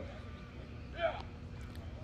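Quiet ballfield background with a low steady hum, broken about a second in by one short shouted call that falls in pitch.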